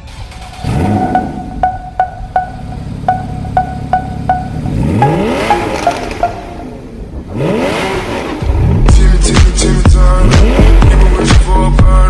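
A Porsche Cayman GT4's flat-six being revved while stationary, its pitch sweeping up and falling back in repeated blips. Music plays over it, with a ticking beat in the first half and loud bass-heavy music coming in about two-thirds of the way through.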